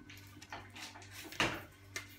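Rustling and clattering handling noises, with a sharp knock about one and a half seconds in.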